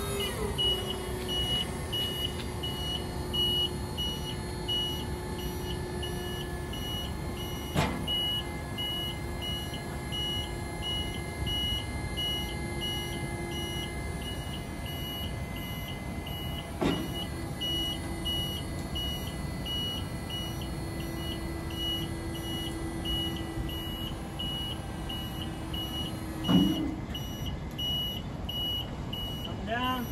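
Haulotte Star 20 vertical mast lift raising its platform: its electric hydraulic pump runs with a steady hum while the lift's motion alarm beeps rapidly and regularly. Two sharp clicks come, one about a quarter of the way in and one just past halfway.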